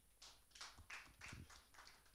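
A few people clapping faintly and unevenly, scattered single hand claps rather than full applause.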